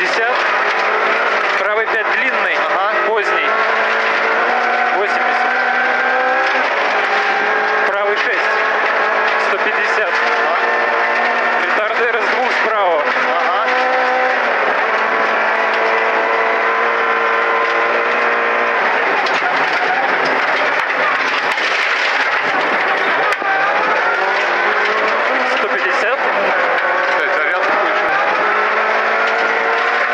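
VAZ 2108 rally car's four-cylinder engine at full stage pace, heard from inside the cabin. It revs hard up through the gears, its pitch climbing and dropping back at each shift and on lifts for corners, with gravel and tyre noise underneath.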